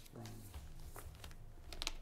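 A spoken word, then a few light, sharp clicks in a quiet room: one about a second in and a quick cluster of two or three near the end.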